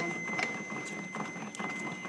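Automated external defibrillator (AED) training unit, just switched on, sounding a faint steady high tone that stops just before its voice prompt. Scattered clicks and rustling come from the pads being handled in the AED case.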